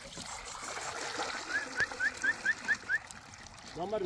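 Water pouring in a steady stream from a plastic jerrycan into a metal pot. About a second and a half in comes a quick run of seven short, high, rising chirps, about four a second.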